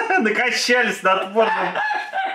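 A man laughing hard: a high-pitched cackle in short breathless gasps, with a wheezing intake of breath about half a second in.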